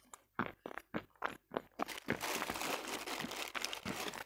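Close-miked crunching of something hard and brittle being bitten and chewed: separate crunches, several a second, for about two seconds, then a denser run of crackling chews.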